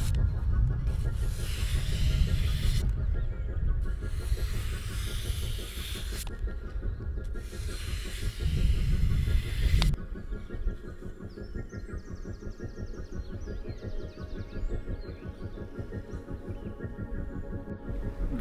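A knife blade drawn in long strokes along wet sandpaper on a flexible sharpening plate, a scraping hiss about two seconds per stroke, stopping about ten seconds in. Background music plays throughout.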